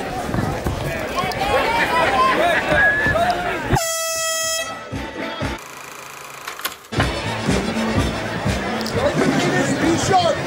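Arena crowd chatter and voices, broken about four seconds in by a single horn blast of under a second that signals the end of the round. After a short quieter gap the crowd chatter comes back.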